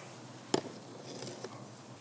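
A single sharp click about half a second in, from handling the bolted lid of a pool sand filter, over faint background noise.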